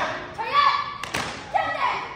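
Young taekwondo performers' short, loud shouted calls, several in quick succession, echoing in a large hall, as the team comes to attention and bows. A single sharp thump sounds a little after a second in.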